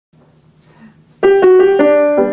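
Grand piano starting a piece: after about a second of faint room noise, a quick run of four single notes is played, each ringing on into the next.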